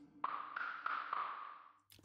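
Quiet percussion layer from the Backbone drum plug-in: about four light tapping hits roughly a third of a second apart, with a thin bright ringing that fades out just before the end.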